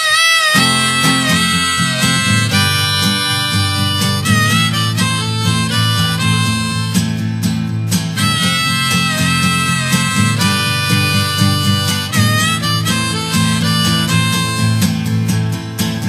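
Instrumental intro of a pop song played live by a band: a harmonica carries a wavering melody over guitar accompaniment, which comes in about half a second in, before the vocals begin.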